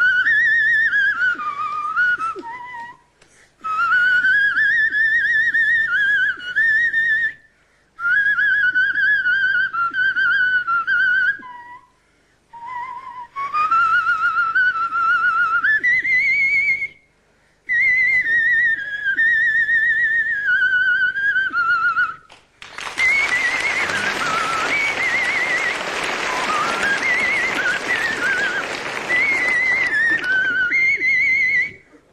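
A man whistling a tune through two fingers in his mouth, a shrill wavering melody in phrases with short breaks for breath. About 23 seconds in, loud audience applause breaks out and the whistling carries on over it.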